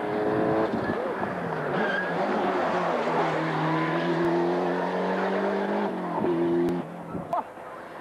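A rally car's engine running hard at high revs, the pitch held and then stepping down as it shifts gear, with the tyres working on tarmac. The note breaks and the level dips near the end.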